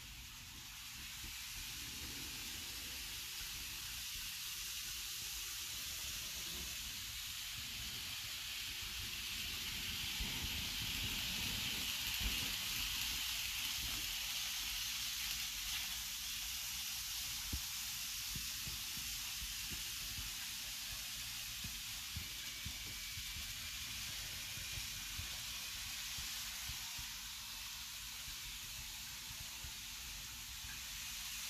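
N scale model trains running on plastic roadbed track: a steady hissing whir from the small motors and rolling wheels. It swells to its loudest a little before halfway through as a train passes close, then eases off.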